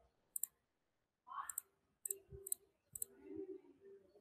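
Computer mouse button clicking: about five quiet, sharp clicks at irregular intervals.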